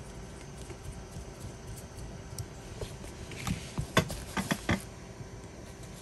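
Small plastic parts being handled and fitted together by hand: a quick run of about half a dozen light clicks and taps over a second and a half around the middle, otherwise faint room tone.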